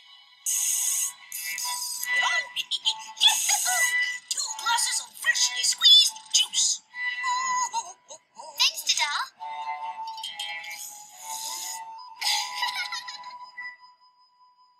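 Animated cartoon soundtrack played back through computer speakers: character voices speaking English over background music. It sounds thin, with no bass.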